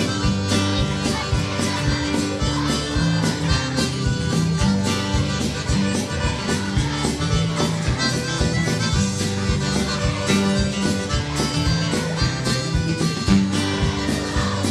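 Live band playing an instrumental passage: a reedy accordion melody over guitar, a stepping bass line and a steady drum beat.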